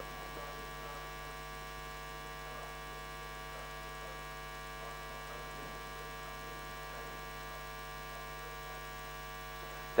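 Steady electrical mains hum from the recording chain. Under it, a faint off-microphone voice is heard.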